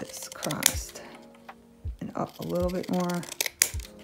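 Scissors snipping through kraft cardboard, with sharp cuts about half a second in and again near the end, over soft background music with held notes.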